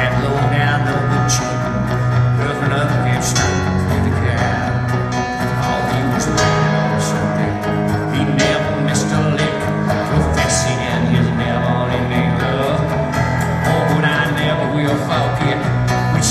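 Live country band playing an instrumental passage on acoustic guitar, electric guitar and keyboard, with held low notes that change every few seconds.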